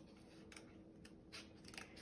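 A few faint snips of scissors trimming a piece of cardboard.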